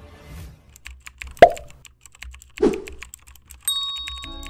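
Edited-in sound effects for a subscribe reminder: a run of rapid keyboard-typing clicks, two loud plops that drop sharply in pitch, and a bell-like ding near the end.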